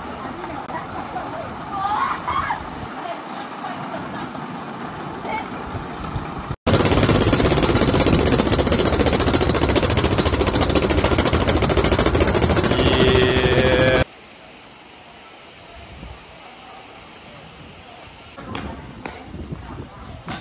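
Metal roller slide rattling loudly and rapidly as a rider goes down it over the spinning steel rollers. It starts abruptly about six and a half seconds in and cuts off suddenly about seven seconds later. Quieter voices come before and after it.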